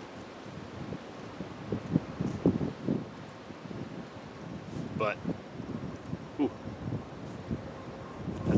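Wind gusting on the microphone with dry leaves rustling, and a brief murmur from a person's voice about five seconds in.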